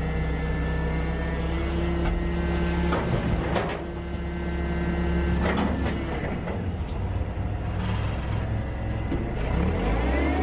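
Caterpillar forklift running with a steady whine and low drone as it lifts and tips a steel dumping hopper. A few knocks and clatters come about three seconds in and again near six seconds as the hopper tips and its load drops into the metal dumpster.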